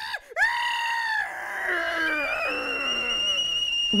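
A cartoon character's angry, strangled scream: a high cry starts about half a second in and slides down in pitch. From about halfway a steady high whistle like a steam-kettle sound effect joins it, the cartoon sign of fuming rage.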